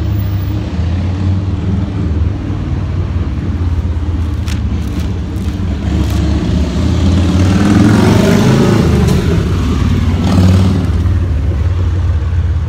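Street traffic under a steady low rumble; a motor vehicle passes, its engine sound swelling and falling away, loudest about eight seconds in.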